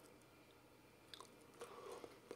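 Faint mouth sounds of a person chewing banana: a few soft wet clicks, mostly in the second half.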